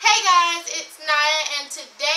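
A teenage girl singing two short, wavering phrases unaccompanied.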